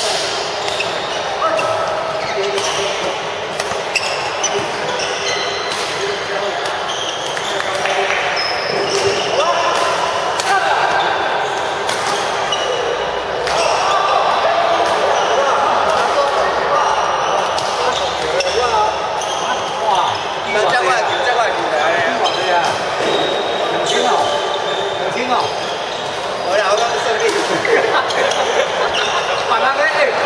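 Busy badminton hall: shuttlecocks struck by rackets on several courts as a stream of sharp clicks, sneaker squeaks on the court floor, and background voices, all echoing in the large hall.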